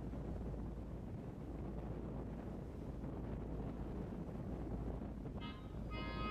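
Steady low rumble of wind on the microphone. Music comes in shortly before the end.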